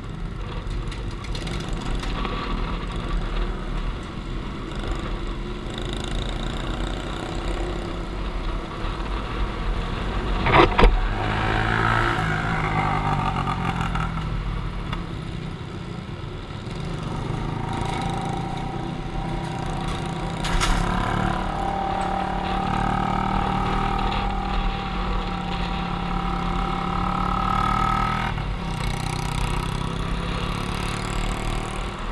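Motorcycle engine running while riding, over a steady rushing noise. The engine note holds steadier and rises slightly in the second half, with a sharp knock about ten seconds in and another about twenty seconds in.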